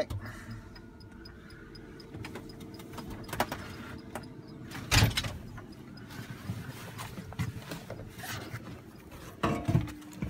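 A person climbing out of a tractor cab: a steady low hum, then a single loud clunk about halfway through, with scattered knocks and steps afterwards.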